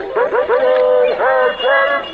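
Cartoon voices singing or calling out, run through a 'G major' pitch-shifting video effect that makes them sound warped and electronic. There are several short syllables with a longer held note about half a second in.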